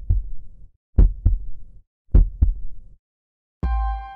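Heartbeat sound effect: three double 'lub-dub' thumps about a second apart. Near the end a deep low hit comes in with the first chiming notes of a logo jingle.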